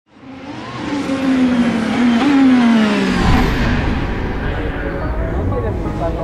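Formula 1 race car engine passing by, fading in and dropping in pitch in two falling glides. A deep low rumble takes over about halfway through.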